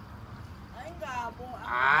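A man's loud, rising shout of "Aie!" near the end, the loudest sound, after a shorter pitched voice call that bends up and down about a second in.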